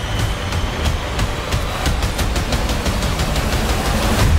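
Loud movie battle sound mix: a warplane's engine running hard in a steep dive, with a quick, irregular string of sharp cracks over a dense orchestral score and a heavy low rumble.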